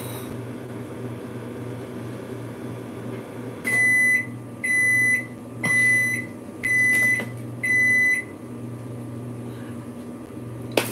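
An electronic kitchen-appliance beeper, such as a microwave's, sounding five high beeps, each about half a second long and about one a second, starting about four seconds in, over a steady low hum.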